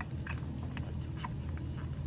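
Newborn puppies nursing, making several short faint squeaks and suckling sounds, over a steady low rumble.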